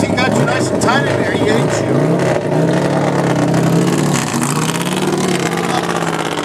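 Rebodied Ferrari 288 GTO race car's engine running at idle, heard from inside the cockpit, its pitch rising and falling briefly twice, with voices over it in the first two seconds.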